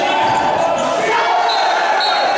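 A handball bouncing on a wooden sports-hall floor, over a steady din of crowd voices.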